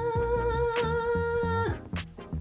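A woman's voice holding one long sung "ahh" note, steady in pitch, that stops near the end, over background music with a plucked rhythm.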